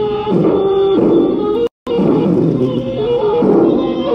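Background music with a melody moving in steps between held notes, cutting out to silence for a split second near the middle.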